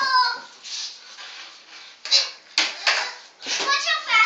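Young children's voices: a high child's cry right at the start, then short breathy vocal bursts and a few sharp knocks.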